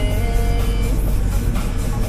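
Music from the cab radio over the steady low drone of a Fendt 724 tractor's six-cylinder diesel engine on the road, heard from inside the cab.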